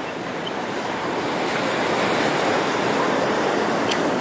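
Sea surf washing onto a sandy beach: a steady rush of water that swells gradually louder over a few seconds.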